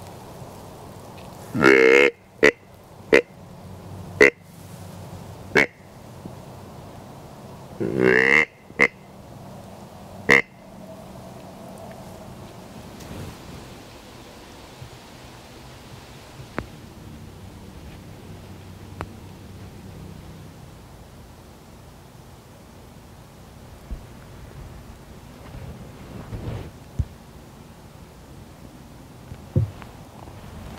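Whitetail deer grunt call (grunt tube) blown by a hunter to imitate a buck and draw deer in: a longer grunt about two seconds in followed by four short grunts, then another longer grunt around eight seconds in followed by two short ones. After about ten seconds only faint woodland background remains.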